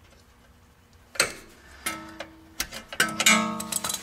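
Metal hand tools clinking against the steel suspension while a cotter pin is fitted through the ball-joint castle nut: a sharp clink about a second in, then a run of clinks near the end, each leaving a short metallic ring.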